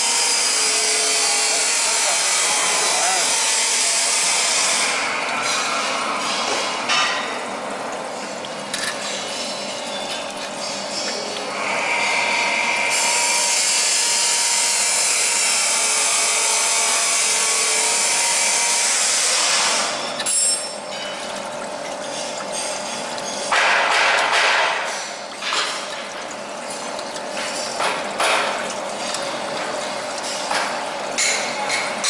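Chain link fence machine and workshop machinery running: a loud, steady hiss with a faint hum. Twice it drops to quieter stretches of light clicking and rattling, once about five seconds in and again about twenty seconds in, as steel wire is fed through the machine's straightening rollers.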